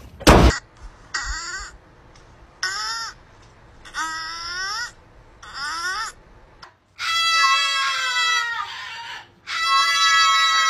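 A sharp loud sound, then four short wavering animal calls about a second and a half apart. In the second half, music with long held tones takes over.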